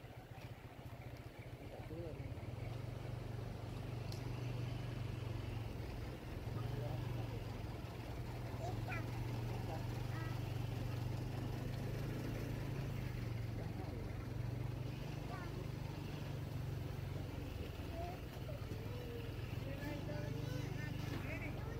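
Low, steady drone of an idling bus engine, growing louder about two seconds in, with people's voices faintly in the background.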